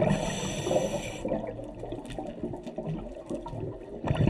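Scuba diver's regulator breathing underwater: a hiss that stops about a second in, then a quieter stretch of faint bubbling and crackle between breaths.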